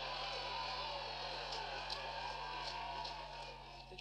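Rugby crowd cheering with some scattered clapping as a try is scored, a steady wash of noise, heard through a computer's speaker and picked up by a phone.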